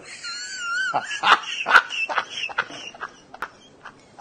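A man's helpless laughter: a high, wavering squeal for about the first second, then choppy gasping bursts that thin out and fade after about three seconds.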